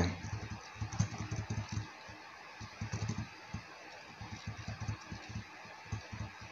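Computer keyboard keys tapped softly in short irregular runs, typical of nudging a layer into place with the arrow keys.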